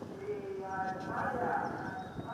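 A man's voice calling out in long, drawn-out tones.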